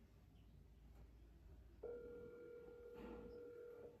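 Mobile phone on speaker playing a ringback tone as a call rings out: one steady electronic tone starts about two seconds in and lasts about two seconds.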